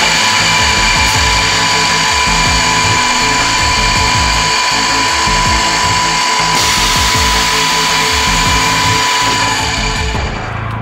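Electric drive motor of a multi-spindle drill head on a wood boring machine running, a steady whine with one strong high tone that stops about half a second before the end, heard under background music with a beat.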